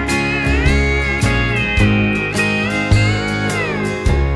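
Instrumental intro of a country song: a steel guitar plays a sliding lead melody over a full band with a steady drum beat.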